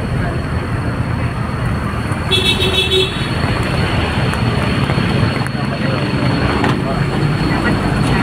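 A vehicle driving along a mountain road, heard from inside, with steady engine and road rumble, and one short horn toot about two seconds in.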